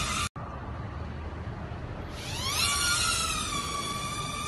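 Propeller motors of a small UFO-style toy drone. The sound drops out for an instant near the start, leaving only a faint hiss. About two seconds in, a high whine rises in pitch as the motors spin up, then levels off steady.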